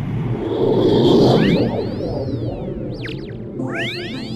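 Magic-spell sound effect: a sudden rushing whoosh, then a run of overlapping electronic tones that sweep up and fall back down, with a second run of them near the end.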